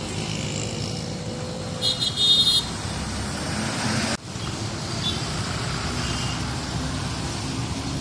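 Road traffic at a busy junction: buses, cars and motorbikes passing with their engines running, and a vehicle horn sounding briefly about two seconds in, the loudest sound.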